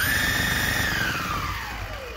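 Electric skateboard's belt-drive motors and wheels spinning free on the bench under remote throttle through a VESC speed controller. The motor whine is already high, holds steady, then falls smoothly from just under a second in as the wheels slow, over a low rumble. The board still vibrates a little.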